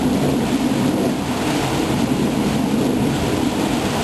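Small waterfall pouring over rock into a pool: a steady rushing noise with a low rumble.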